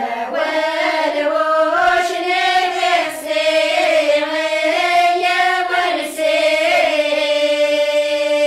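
Group of women singing a traditional Kabyle urar song together, unaccompanied, in short melodic phrases. Near the end they settle on one long held note.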